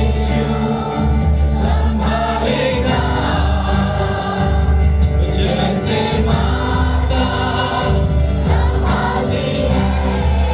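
Group of worship singers singing a praise song through a sound system over amplified band music, with a strong bass and a steady beat.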